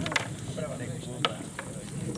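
A few sharp clicks from play at a chessboard, over faint voices in the background.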